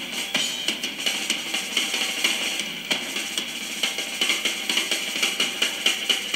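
Rock drum kit in a fast live drum solo: rapid stick strokes across the drums, mixing single and double strokes, over a steady wash of cymbals.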